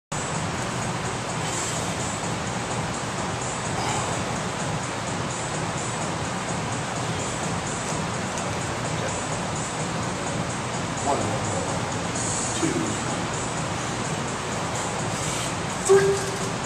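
Background music and faint voices in a gym, a steady din throughout, with a short loud sound right at the end as the lift begins.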